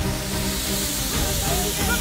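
Background music with sustained notes, under a steady hiss of noise; faint voices come in about halfway through.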